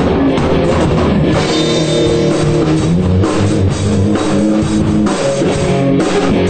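Punk rock band playing: drum kit and guitar, loud and steady, with a driving beat.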